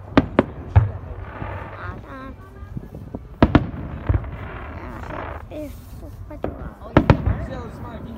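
Aerial fireworks shells bursting overhead: sharp bangs in clusters, three within the first second, three more around three and a half to four seconds, and a pair near seven seconds.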